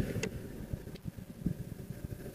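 Faint low rumble with a few soft clicks as the Honda Air Blade scooter's ignition is switched on; the engine is not started.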